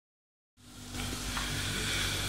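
Chicken and vegetable skewers sizzling on a ridged grill pan. A steady hiss fades in about half a second in.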